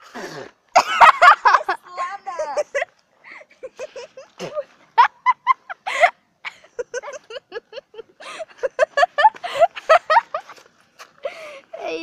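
Girls' voices making short, loud non-word noises of disgust, gagging and coughing sounds mixed with squeals, as a reaction to the taste of dog food.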